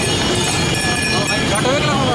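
Busy crowded street: a steady din of traffic and crowd noise with passers-by talking, one nearby voice standing out in the second half.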